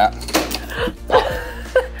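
A geode splitting under the squeeze of a chain pipe cutter's chain: a sharp crack as the rock gives way, then a louder knock about a second later.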